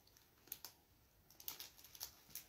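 Faint, irregular light clicks and crinkles of a small clear plastic wrapper being handled, with a few in quick succession about half a second in and a denser cluster near the end.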